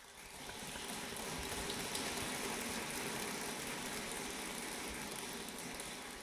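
Audience applauding, swelling in over the first second, holding steady, then tapering off near the end.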